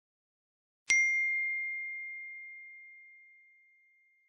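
A single bell ding: one clear, high ringing note struck about a second in, fading away over about two seconds.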